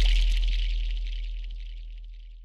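Fading tail of an intro sound effect: a deep rumble with a high hiss above it, dying away steadily.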